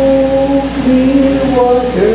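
Women singing a gospel song, holding one long note that steps down to a lower note about one and a half seconds in.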